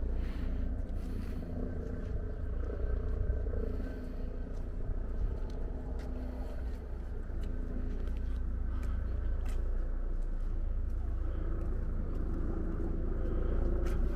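Outdoor ambience: a steady low rumble with faint voices of people around and scattered light ticks.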